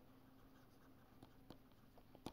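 Near silence with a few faint ticks of a stylus writing on a pen tablet.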